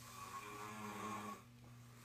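A man snoring: one long snore that stops about a second and a half in, over a steady low hum.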